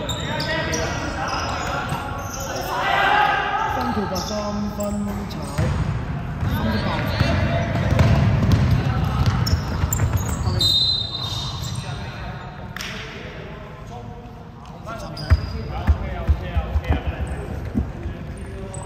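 Basketball play on a hardwood court in a large, echoing gym: players' voices calling out, then a basketball dribbled several times in quick succession near the end.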